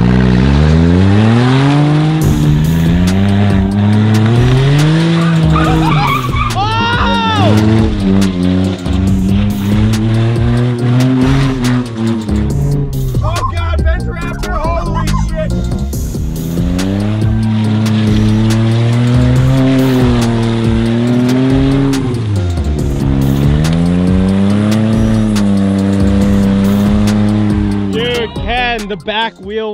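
Smart car's three-cylinder engine revving up and dropping back again and again as the car is thrown into slides on PVC drift sleeves over its tyres, with the plastic scraping over concrete. A passenger shrieks with excitement.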